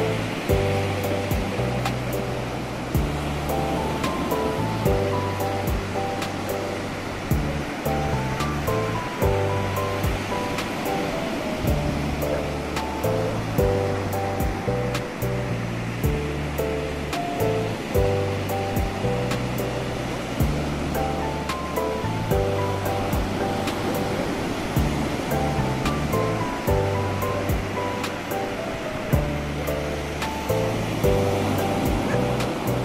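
Slow instrumental piano music, its chords and bass notes changing every second or two, over the steady wash of ocean waves breaking on a beach.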